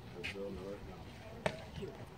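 A single sharp pop about one and a half seconds in as a pitched baseball arrives at home plate, heard through the backstop over spectators' low talk.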